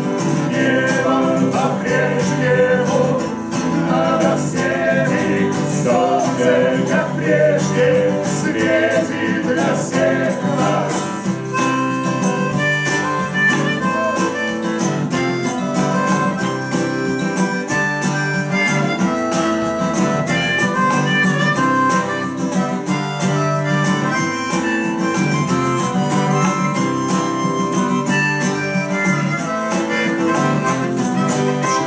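Steel-string acoustic guitar played live in an instrumental passage, strummed chords. For roughly the first ten seconds a wavering melody line rides over the guitar, after which the guitar's held notes and chords carry on alone.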